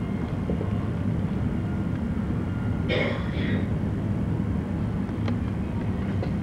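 Steady low electrical hum with no speech over it. A brief, faint sound comes about halfway through, and small clicks come near the end.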